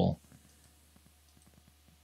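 Faint, rapid, irregular clicking from the computer setup over a low steady hum.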